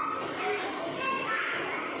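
Young children chattering and calling out over one another while they play.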